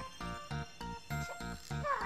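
Background music with a quick, steady beat and held notes.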